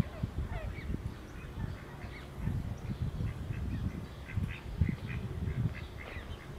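Great crested grebe chicks giving short, high begging calls over and over, thickest in the second half, as an adult feeds them, over a low uneven rumble.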